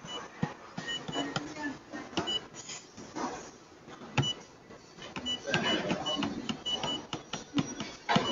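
Short high beeps from a multihead weigher's touchscreen control panel, one at each key press as a password is tapped in on the on-screen keypad, a string of them spread through the span. Faint low murmur and small clicks underneath.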